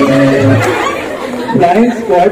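Music playing over the sound system breaks off about half a second in, followed by a person's voice speaking loudly near the end.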